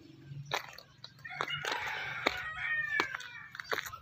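A rooster crowing: one long call of about two seconds that drops in pitch at its end, among a few sharp taps.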